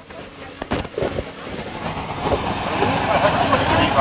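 Children jumping on an inflatable bouncy castle. A few separate thumps come in the first second, then a louder, continuous rumble of jumping on the air-filled vinyl builds through the second half, over a steady low hum.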